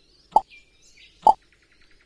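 Two short plop sounds about a second apart, the menu sound effects of a computer English-learning program.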